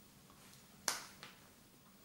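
A single sharp click a little under a second in, followed shortly by a much fainter tick, over quiet room tone.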